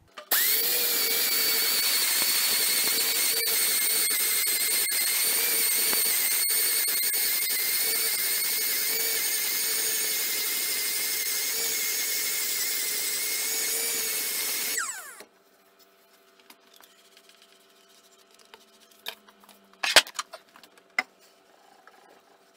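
Air-powered random orbital sander grinding the hardened bed of a lathe, running with a steady high whine. About fifteen seconds in it is switched off and spins down with a falling pitch. A few sharp knocks follow as the bed is handled.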